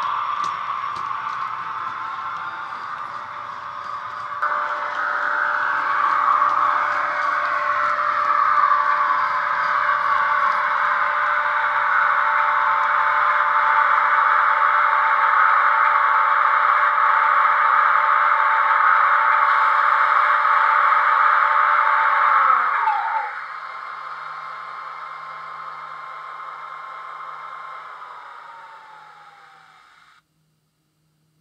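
DCC sound from an OO gauge EFE Southern Region booster electric locomotive, played through its speaker: a loud electric whine of several steady tones with some gliding pitches. A little over twenty seconds in, the tones drop in pitch and the sound falls away quickly, and a last whine glides down and fades as the locomotive winds down.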